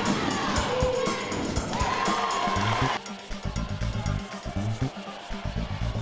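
Background music with a beat. About halfway through it drops quieter, leaving mostly the low bass pulses.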